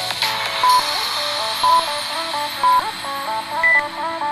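Upbeat background music with an interval timer's countdown beeps over it: three short beeps a second apart, then a higher final beep marking the end of the work interval.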